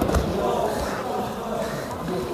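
Indistinct voices echoing in a large gymnasium hall, with a dull thump at the very start.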